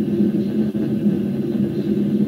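A steady, low-pitched rumbling drone with a constant hum in it.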